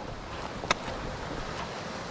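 Steady rushing noise of wind and movement on a chest-mounted camera's microphone while hiking, with one sharp click a little under a second in, the trekking pole tip striking rock.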